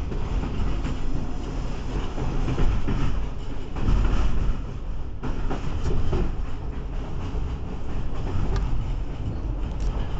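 Running noise of a moving passenger train heard from inside the carriage: a steady rumble of wheels on rails, with a few sharp clicks in the second half.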